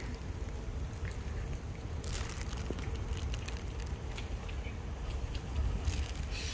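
Wind and riding noise on a phone microphone while cycling: a steady low rumble with faint scattered clicks and a brief hiss about two seconds in.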